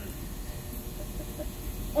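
A lull in the room: a steady low hum and hiss, with a few faint, brief sounds near the middle.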